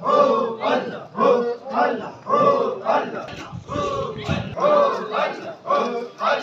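A crowd of men chanting loudly in unison, a short phrase repeated in a steady rhythm about twice a second.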